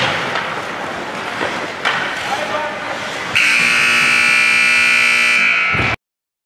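Ice rink scoreboard horn sounding one loud, steady blast of about two and a half seconds, starting about halfway in and ending abruptly. Before it there is general rink noise of voices and the odd knock of sticks or puck.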